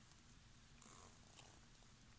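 Near silence: faint low room hum in a pause between read-aloud lines.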